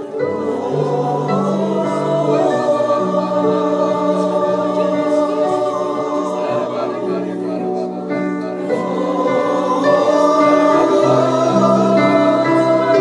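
Men singing a gospel-style worship song over sustained electronic keyboard chords, growing louder near the end.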